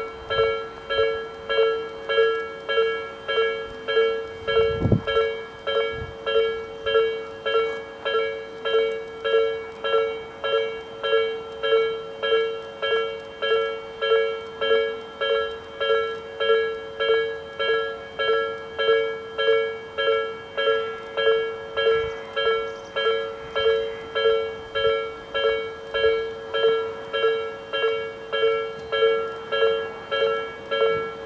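Japanese level-crossing warning bell: an electronic bell ringing in an even, repeating rhythm of about three strikes every two seconds, the sign that the crossing is closed for an approaching train. A brief low thump sounds about five seconds in.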